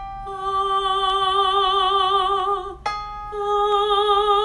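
A woman singing a held vowel with vibrato in a vocal exercise, for about two and a half seconds. She stops for a breath and comes back in a semitone higher. A keyboard note sounds in the gap, giving the new pitch just before she re-enters.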